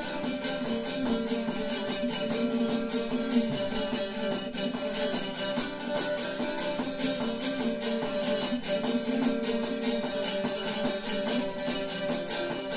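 Solo tambura, a small long-necked Balkan lute, playing an instrumental interlude of the tune with rapid, steady picking.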